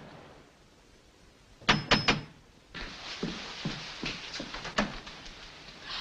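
Three quick knocks on a door, followed by a few fainter clicks and taps as the door is handled.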